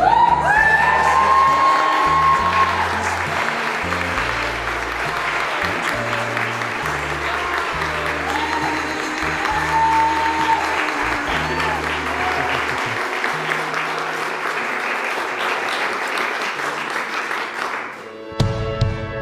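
Wedding guests applauding and cheering, with a few whoops near the start. Music with a bass line plays underneath and its bass drops out about two-thirds of the way through.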